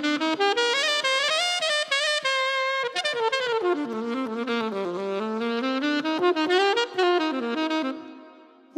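Solo saxophone played on an Ambipoly synthetic reed: one smooth, connected melodic phrase that sinks to its lowest notes about halfway through, climbs back up and fades out just before the end.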